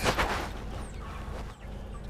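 Quiet outdoor background with a brief soft noise at the start and a few faint, short high bird chirps.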